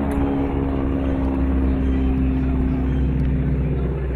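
Single-engine propeller aircraft's engine droning steadily during an aerobatic display, a level hum over a low rumble.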